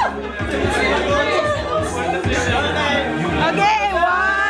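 A group of men talking over one another, with music playing underneath.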